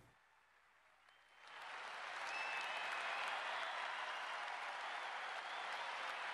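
Near silence for about a second and a half, then a large stadium crowd applauding, fading in and holding steady.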